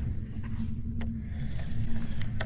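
A steady low hum and rumble, with one sharp click about a second in.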